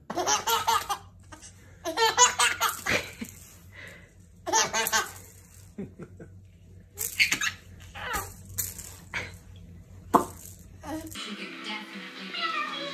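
A baby laughing in repeated short bursts, about seven fits of giggling and belly laughter spread a second or so apart.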